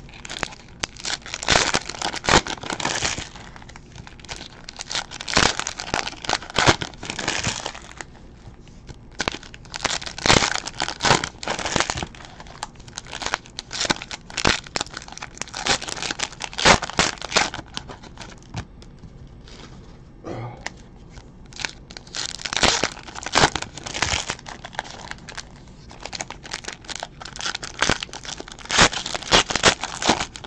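Plastic trading-card pack wrappers crinkling and tearing open in the hands, in irregular bursts with short pauses between them.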